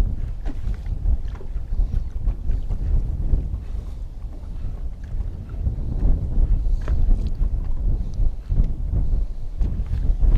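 Wind buffeting the microphone in uneven gusts over small waves slapping against an aluminium fishing boat's hull.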